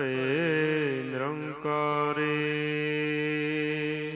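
A man chanting Gurbani: a long held note that wavers and bends in a melisma for about the first second and a half, then holds steady and fades out at the end.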